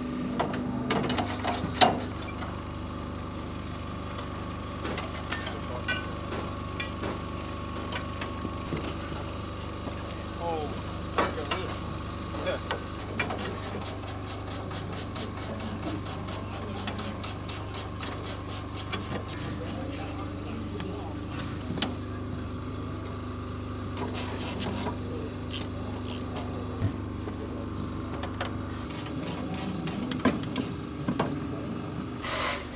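Hand tools working on a sprint car: a run of sharp metallic clicks and knocks from spanners on the car, over a steady low hum, with faint voices.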